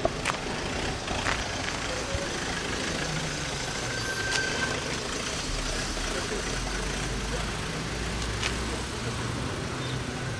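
A vehicle engine idling steadily, with faint voices in the background and a few light knocks.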